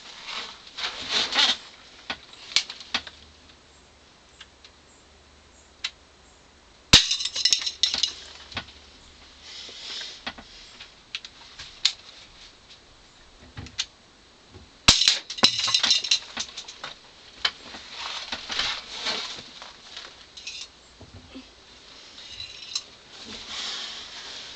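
Two sharp pops of a Crosman C11 CO2 pistol firing at an aerosol deodorant can, about eight seconds apart, each followed by a second or two of hissing and rattling as the shot strikes the can and knocks it over. Softer clicks and handling noises fill the gaps.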